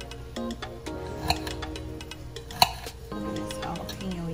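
Background music, with two sharp clicks of a knife blade striking a plate as a jalapeño pepper is sliced into rounds, about a second in and again about a second and a half later.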